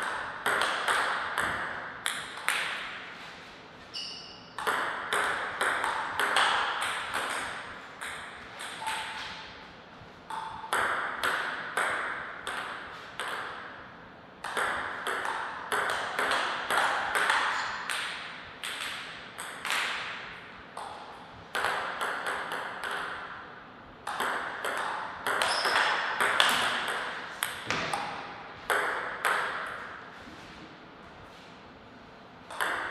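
Table tennis ball clicking back and forth off paddles and table in a series of quick rallies. Each rally is a run of sharp clicks lasting a few seconds, with short pauses between points.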